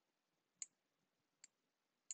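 Two faint clicks of a stylus tip tapping a tablet screen while writing a short handwritten note, the first about half a second in and the second about a second later. Otherwise near silence.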